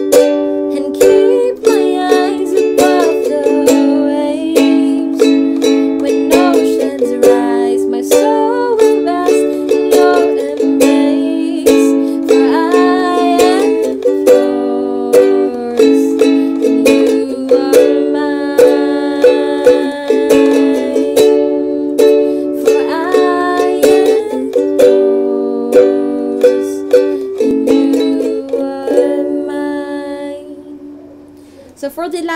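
Ukulele strummed in a steady down-down, up-up, up-down-up-down-up pattern through chords such as G, A, Bm7, A and D, with a woman singing along. The strumming stops near the end and the last chord rings out.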